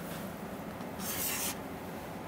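Chalk scraping on a chalkboard: a single half-second stroke about a second in, as a letter is written.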